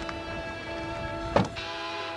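Background music of held, sustained tones, with one sharp thump about one and a half seconds in, a vehicle's raised rear door being pulled shut.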